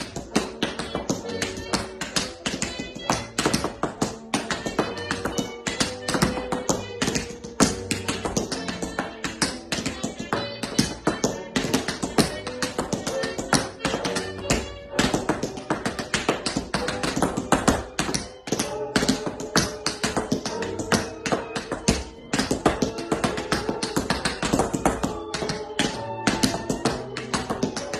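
Tap shoes' metal taps striking a wooden floor in fast, dense rhythmic patterns, danced over music.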